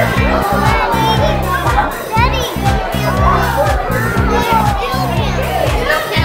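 Children chattering and exclaiming over loud background music with a steady beat, with a short high squeal about two seconds in.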